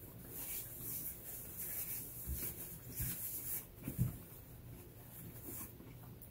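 Faint rustling of a paper napkin as fingers are wiped, with a few soft low knocks in the middle.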